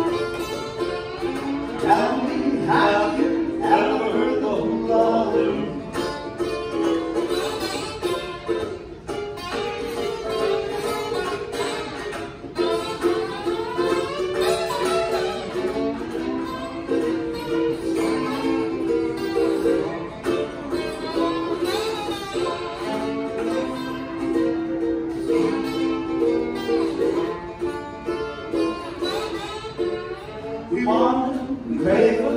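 Instrumental break of a Hawaiian-style song: a lap steel guitar plays gliding, sliding notes over steadily strummed chords on a Kanileʻa ukulele.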